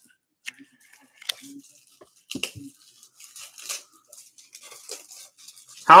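Trading cards and a clear hard plastic card holder being handled: scattered light clicks, scrapes and rustles of plastic and card stock.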